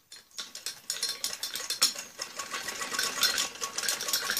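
Black domestic sewing machine stitching a seam that joins two strips of net fabric, its needle mechanism running in a rapid, even clatter. It starts about half a second in.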